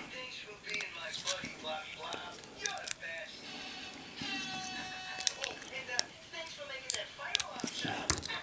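Lock picking in a brass three-pin postal counter padlock: a pick and tension wrench working the pins, giving faint, irregular metal clicks and taps.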